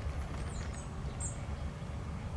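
A few short, high-pitched chirps from small birds, about half a second in and again just past a second, over a steady low rumble.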